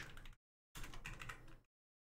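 Faint typing on a computer keyboard: a short run of keystrokes lasting just under a second, starting about three-quarters of a second in.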